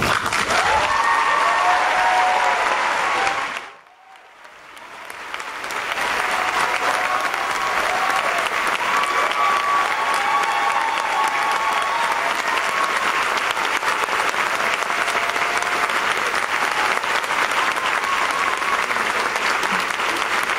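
Sustained applause from a large audience, with faint voices calling out over it. The applause drops away sharply about three and a half seconds in, then swells back and holds steady.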